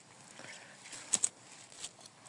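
Faint rustle of dry leaves and pine needles on the forest floor, with two quick crackles a little over a second in and a softer one near the end.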